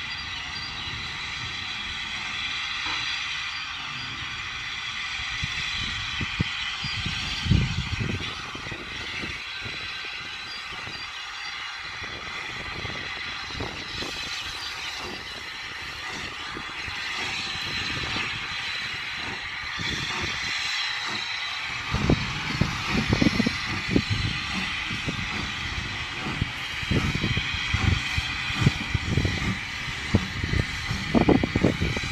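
Steam locomotive and coupled diesel locomotives moving slowly past, a steady hiss over a low rumble. From about two-thirds of the way in, irregular low thumps join it.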